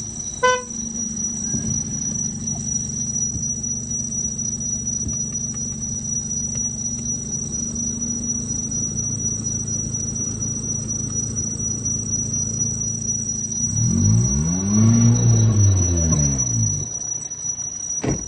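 Nissan Almera N16's 1.5-litre four-cylinder petrol engine idling steadily, with one throttle blip that rises and falls in pitch about fourteen seconds in. A short beep sounds about half a second in, and a steady high whine runs above the engine.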